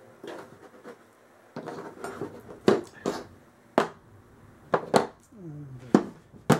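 Bent needle-nose pliers and metal air-rifle parts being handled and set down on a tabletop: a series of sharp clicks and knocks, coming closer together in the second half.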